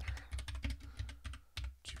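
Typing on a computer keyboard: a quick run of about eight keystrokes, roughly four a second.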